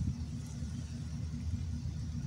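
A steady low rumble with faint hiss, without any clear event.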